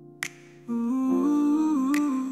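Outro of an AI-generated (Suno) song: a wordless hummed vocal melody over soft backing that fades out, then comes back in about two-thirds of a second in. A finger snap lands shortly after the start and another near the end, spaced evenly in the song's slow beat.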